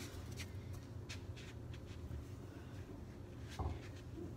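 Soft scuffs and steps of socked feet on carpet and a low carpet-covered balance beam, with one dull thump about three and a half seconds in as a foot lands on the beam, over a steady low room hum.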